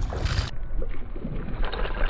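Hooked peacock bass thrashing and splashing at the water's surface close to the bank, heard as small splashes and ticks in the second half, over a steady low wind rumble on the microphone.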